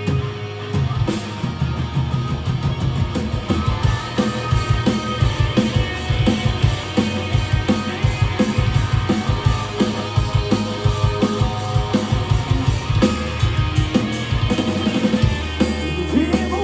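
Rock band playing live: distorted electric guitars, bass and drum kit in a loud instrumental passage with a steady, driving drum beat and no vocals. Near the end a sustained low bass note comes in.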